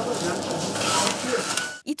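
Working bakery room noise: a steady hiss-like din with faint voices in the background. It cuts off sharply near the end, and a narrator starts speaking right after.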